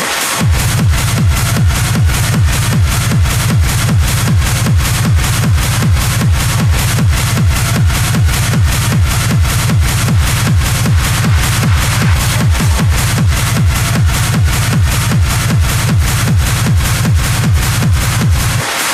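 Hard techno in a DJ mix: a fast, even kick drum at about two and a half beats a second over a dense, distorted layer. The bass cuts out for a moment at the very start and comes straight back, as when the DJ works the mixer's EQ.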